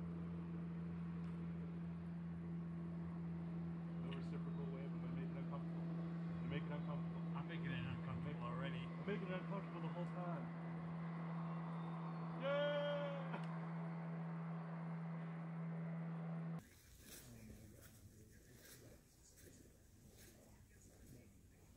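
Steady low hum under faint, distant conversation, with one loud drawn-out vocal call a little past halfway. The hum stops suddenly near the end, leaving quiet ambience.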